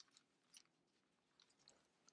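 Near silence with a few faint, scattered ticks and rustles of thin Bible pages being leafed through by hand.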